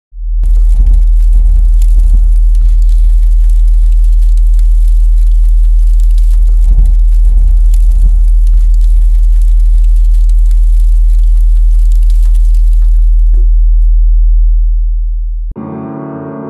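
Loud, steady sub-bass drone with crackling static and clicks over it, a few low swells rising and falling within it. It fades near the end and cuts off as a piano comes in.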